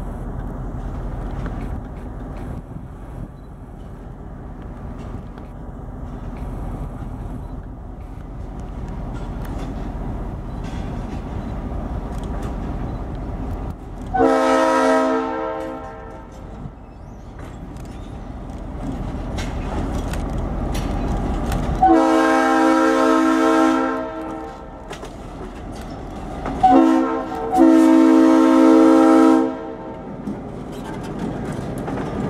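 EMD GP38-2 diesel locomotive running light, its engine rumble building as it approaches, then sounding its Nathan Airchime RS-3L three-chime horn in the grade-crossing pattern: two long blasts, a short and a long. The last two blasts are the loudest, as it passes close by.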